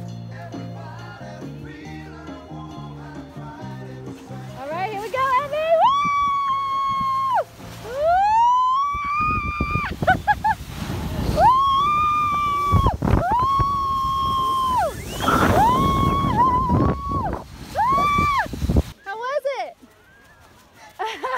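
Music at first, then from about five seconds in a run of about six long, high-pitched screams, each rising, held and dropping off, over a loud rushing rumble, as a rider slides down a snow-tubing slope. The rumble cuts off suddenly about a second before the end.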